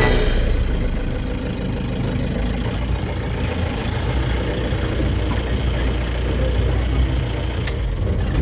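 A vehicle's engine idling steadily, with a low, even hum.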